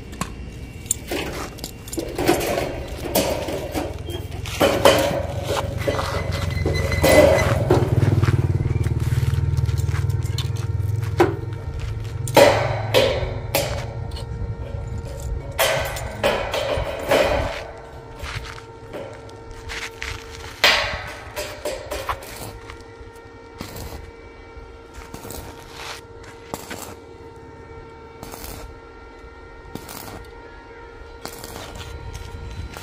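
Sharp knocks and clanks of steel tubing being handled, over background music with held tones. A low rumble underneath stops about seventeen seconds in.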